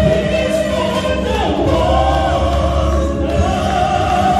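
A man and a woman singing a gospel worship song into microphones over accompaniment, holding long notes, with a downward slide in the melody about one and a half seconds in.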